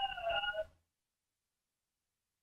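A man chanting Quran recitation (tilawah) over a telephone line, a drawn-out melodic phrase that cuts off abruptly less than a second in.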